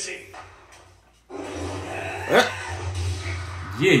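Anime soundtrack: a deep steady rumble with a single rising, voice-like cry over it about two seconds in, after a short drop-out about a second in.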